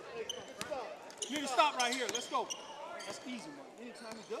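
Basketball being dribbled on a hardwood gym floor, with sneaker squeaks and scattered shouts from players and the crowd in the gym.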